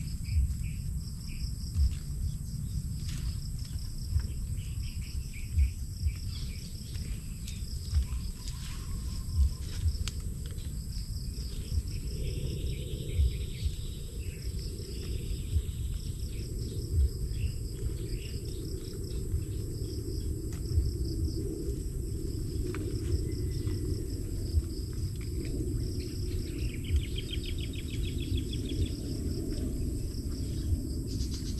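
Insects chirping steadily in the vegetation: a high, evenly pulsing trill with a steady higher whine above it, and short raspy trills twice, about halfway through and near the end. Frequent short low thumps sit underneath.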